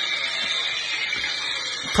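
A steady hiss with no pitch, even in level and bright in tone, that starts abruptly.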